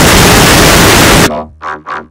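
A very loud burst of harsh, static-like noise covering every pitch, which cuts off suddenly just over a second in. Two short, fainter sounds follow near the end.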